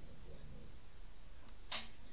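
Quiet room tone with a faint high-pitched whine pulsing on and off, then a short breath drawn in near the end.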